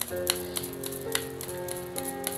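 Soft sustained music chords come in at the start, over a quick run of light papery clicks from a deck of tarot cards being shuffled by hand.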